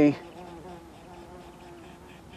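A flying insect, bee- or fly-like, buzzing faintly and steadily near the microphone, a thin wavering drone.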